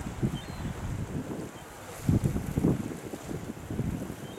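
Wind buffeting the microphone over sea water washing against shoreline rocks, with stronger gusts about two seconds in.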